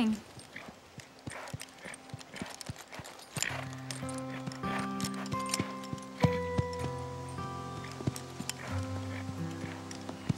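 Horse's hooves clip-clopping as a ridden horse comes up. Soft background music with long held chords enters about three and a half seconds in and plays under the hoofbeats.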